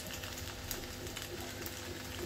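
Quiet, steady background noise with a faint low hum and no distinct event.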